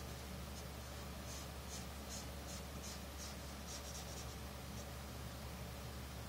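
A yellow highlighter marker rubbed back and forth on paper, colouring in a drawing. It makes a series of faint, short, scratchy strokes, about two or three a second, which stop near the end.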